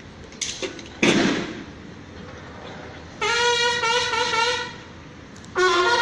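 A sharp bang about a second in that rings away. Later comes a single held horn note lasting about a second and a half, and another pitched horn-like sound begins near the end.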